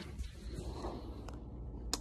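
Faint rustling and handling noise from a person squeezing through a tight passage with a handheld phone, with a couple of short clicks, the sharpest near the end.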